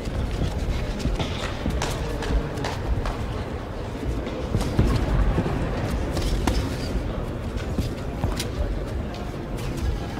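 Boxing sparring: irregular knocks and slaps of gloves and shoes moving on the ring canvas, over a low rumble of gym-hall noise.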